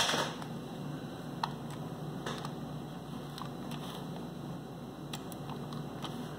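A few scattered light clicks from a computer keyboard and mouse being worked, over a low steady hum.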